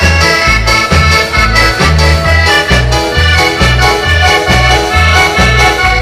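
Live accordion-led dance band music: accordion chords over electric keyboard and drums, with a steady bass beat about twice a second.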